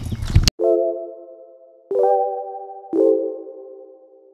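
Three synthesized chime-like chords struck about a second apart, each ringing and slowly fading, over dead silence. This is an edited-in transition sound effect. Brief outdoor ambience cuts off abruptly about half a second in, just before the first chord.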